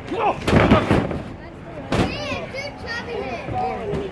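A wrestler's body slamming down onto the canvas-covered wrestling ring: a loud crash about half a second in, then sharper single smacks on the mat about two seconds in and again near the end, over shouting from the crowd.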